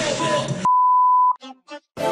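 A Tagalog rap track plays and cuts off about two thirds of a second in. A loud steady electronic beep follows, a single high tone lasting well under a second, then a few short blips and a moment of silence.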